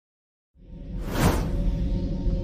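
Logo intro sting: a low music drone fades in about half a second in, with a whoosh sweeping through just past the first second.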